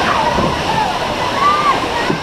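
Rushing, sloshing water of a log flume ride as the boat travels down the water channel, with voices over the water noise.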